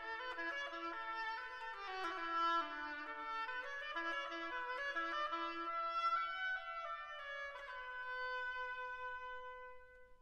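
Classical chamber music: woodwinds play an ornamented melody over a pulsing repeated lower note, closing on a long held note that dies away near the end.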